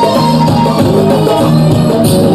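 Live band music played loud through a stage sound system, with guitar and drums.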